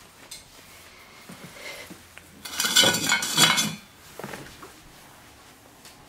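A stainless steel dog bowl set down on a hardwood floor, clattering and ringing for about a second, starting about two and a half seconds in.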